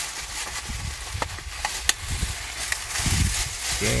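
Thin plastic carrier bags rustling and crinkling as they are pulled open and handled, with a few sharp crackles.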